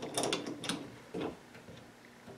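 Light metallic clicks and taps of a wrench being fitted onto and turned on the brass hex fitting of a hydronic manifold flow indicator: a quick run of clicks in the first second and one more a little past the middle. The fitting is coming loose easily.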